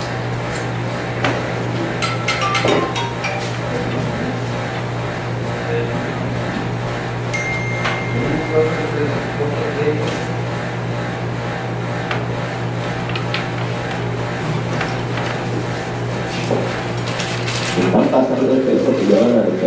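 Quiet small-room tone dominated by a steady low electrical hum, with scattered faint clicks and low murmured voices in the background.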